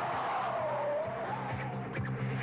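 Car tyres squealing as the sedan slides sideways in a drift, one wavering screech that dips in pitch and rises again, over background music.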